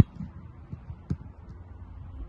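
A punter's foot striking an American football: one sharp thud right at the start, followed by a fainter knock about a second later.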